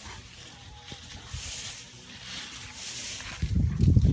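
Dry fallen leaves rustling as a Bernese Mountain Dog shifts about in a leaf pile. The rustle stays faint at first, then turns into loud, dense crackling near the end.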